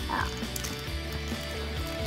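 Soft background music of sustained, held notes over a low steady bass, with one short spoken "oh" right at the start.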